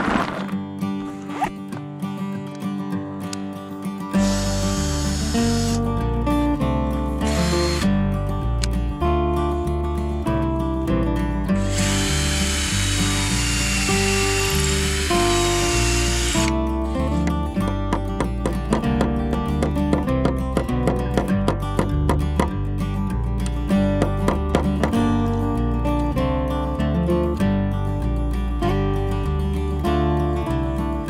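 Background acoustic-guitar music with a steady bass line. Over it a cordless drill runs in three bursts, driving hinge screws into a wooden gate post: a short one about four seconds in, another near seven seconds, and a longer whining run from about twelve to sixteen seconds.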